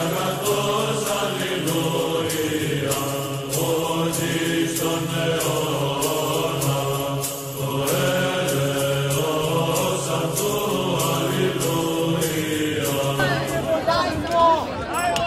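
Background music of voices chanting in unison over a low sustained drone, with a steady ticking beat. Near the end it gives way to voices talking outdoors.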